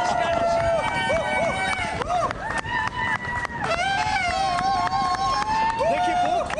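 A New Year fireworks display: many overlapping whistling fireworks, some held and some gliding up and down, over a spatter of sharp bangs and crackles, with crowd voices underneath.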